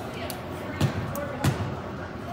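A basketball dribbled twice on a hardwood gym floor before a free throw, two sharp bounces a little over half a second apart, over background chatter.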